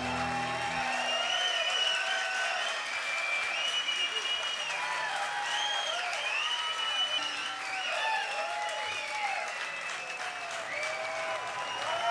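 Club audience applauding and cheering at the end of a song, with many high shouts and whistles over the clapping. The band's last chord dies away within the first second.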